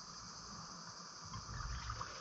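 Water swishing and lapping around a diver moving in waist-deep river water, getting louder in the second half, over a steady high drone of insects.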